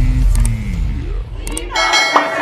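Heavy-bass electronic intro music ending in a falling, powering-down sweep. Near the end a group of people starts shouting together.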